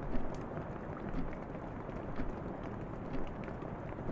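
Steady rain heard through an open window, with a cuckoo clock ticking about once a second.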